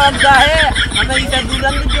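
A scooter's engine idling with a low, steady rumble under people talking.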